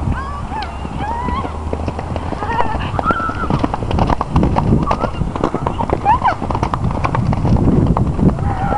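Horse cantering past on soft, muddy turf, its hoofbeats thudding louder and closer from about halfway through, with people's voices calling out over it.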